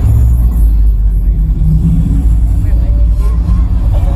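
Loud, deep bass rumble from a stage PA system, cutting in suddenly, with faint higher sounds over it.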